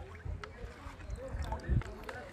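Soft sloshing and splashing of water in a steel bucket as a plastic pan skims the floating paddy seeds off a salt-water solution, separating out the light, hollow, diseased seeds, with a low bump near the end.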